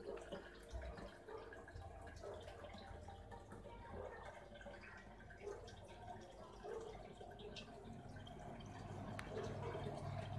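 Faint trickling and dripping of water running through a homemade glass aquarium sump filter as it operates, with small irregular drips.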